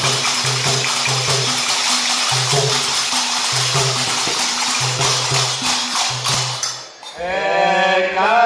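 Instrumental stretch of a Hindu devotional song (bhajan): hand cymbals jingling and clashing in a steady beat over a repeating low note. About seven seconds in the music drops away briefly, then singing voices come back in.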